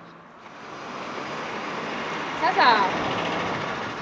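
A bus passing close by, its engine and road noise swelling over about two seconds and easing off slightly near the end.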